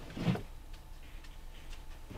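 Quiet inside a stopped car: a faint steady low hum, with one short sound just after the start.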